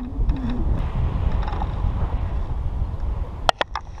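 Wind buffeting the microphone of a camera on a paraglider in flight: a steady low rushing noise, with a few sharp clicks about three and a half seconds in.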